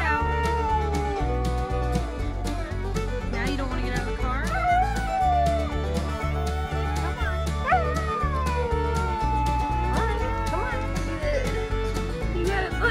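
Husky howling in about three long howls that waver and slide in pitch, over background country music with a steady bass beat.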